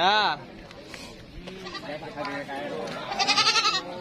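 Goats bleating: a short call right at the start and a longer, wavering bleat about three seconds in.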